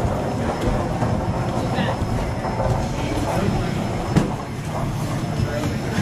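Airport terminal hall ambience: indistinct voices of people milling about over a steady low rumble, with one sharp click about four seconds in.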